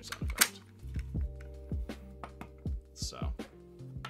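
Bandai Legacy Morpher toy playing its electronic clashing sound effect, a sharp metallic crack about half a second in, over background music with a steady beat.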